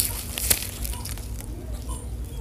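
Plastic sleeve of an artificial poinsettia pick crinkling as it is handled, with one sharp click about half a second in, over a low steady store background.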